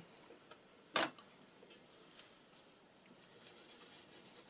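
A single sharp click about a second in, as of a tool or ink-pad case being picked up or set down on the craft table, followed by faint scuffing of an ink blending tool dabbed through a plastic stencil onto paper.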